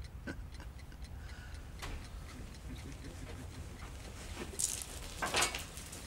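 A clock ticking faintly in a quiet room, with a low steady hum underneath. Near the end come a couple of brief rustling noises.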